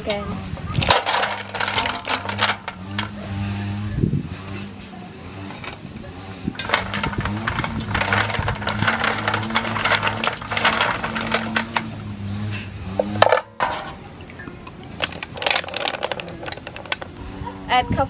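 Clams being scrubbed by hand in a metal basin of water: shells clattering against each other and the basin in rapid runs of sharp clicks, with water splashing.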